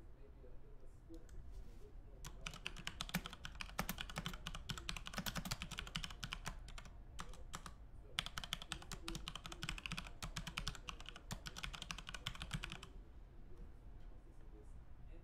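Fast typing on a computer keyboard in two long bursts, with a short pause between them about halfway through.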